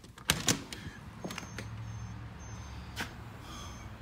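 Clicks and knocks of a storm door being handled and opened, several in quick succession in the first second and a half and one more about three seconds in, over a low steady hum.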